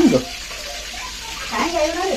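Food sizzling in hot oil in a pan, a steady hiss.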